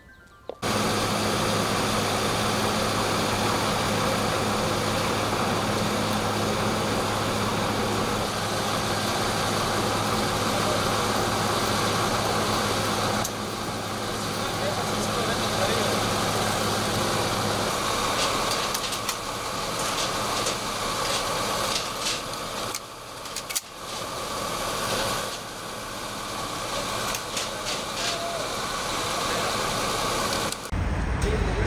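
Field audio of military trucks with engines running and indistinct voices, under a steady low hum that cuts out about eighteen seconds in.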